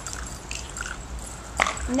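Quiet backyard background with a steady low rumble and faint scattered small sounds, broken once by a single sharp click near the end.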